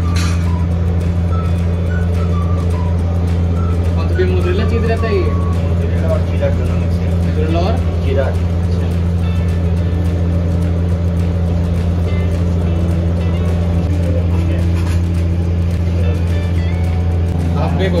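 Steady, loud, low hum of commercial pizza-kitchen machinery, with faint voices in the background.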